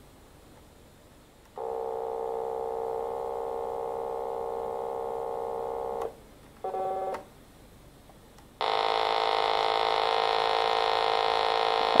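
Homemade Arduino-based polyphonic digital synthesizer with an analog filter taken from a Korg MS-20, playing held notes through its built-in speaker. There is a long steady note, then a short one, then a louder, brighter note near the end. A very slow LFO is set to sweep the filter, but the filter modulation is weak because the Arduino supplies only about five volts of control voltage.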